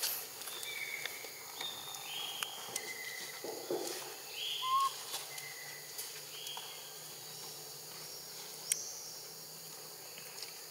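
A series of short, high-pitched animal calls, about eight of them spaced a second or so apart, each a flat note about half a second long, with a few sharp clicks in between.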